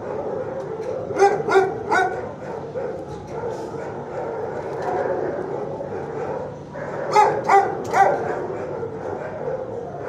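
Dogs barking in a shelter kennel block: two quick runs of three barks, about a second in and again about seven seconds in, over a constant din of other dogs barking and yipping.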